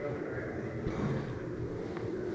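Faint murmur of distant voices over a low, steady rumble of room noise.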